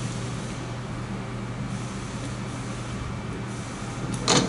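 Steady room tone: a constant low hum under an even hiss, with no distinct handling clicks or knocks.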